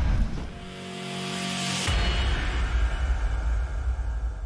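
Logo intro sting: a rising whoosh that builds for over a second, then a sudden deep boom about two seconds in that rumbles on.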